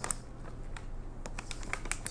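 Crinkling of a packaged snack bag of fried pecans being handled and pulled open, an uneven run of light crackles.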